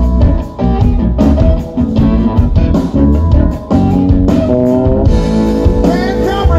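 Live blues-rock band playing an instrumental passage: electric guitar leads over bass guitar and drum kit, with no singing.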